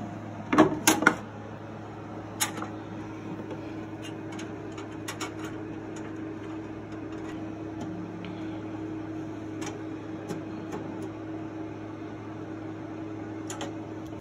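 A screwdriver working on a metal PC case, giving sharp clicks and knocks: two loud ones about a second in, another at about two and a half seconds, then light scattered ticks. Under them runs a steady low hum.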